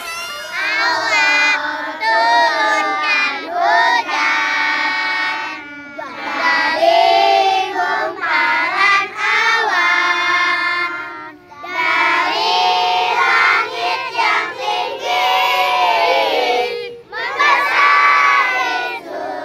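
A group of children singing a song together in long phrases, with short breaks between them.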